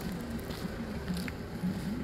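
Low steady rumble of a vehicle engine idling, with a wavering hum over it and a few faint clicks.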